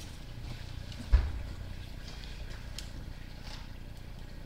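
Low steady rumble with a few faint clicks and one sharp, low thump about a second in. This is handling noise while a sewer inspection camera's push cable is pulled back.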